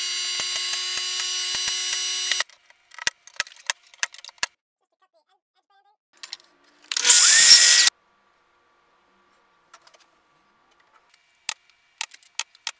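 Woodshop power-tool sounds in quick succession. A steady machine hum runs for about two seconds and cuts off, then comes a scatter of sharp clicks and knocks. Near the middle there is about a second of loud power-tool noise with a rising whine, the loudest part.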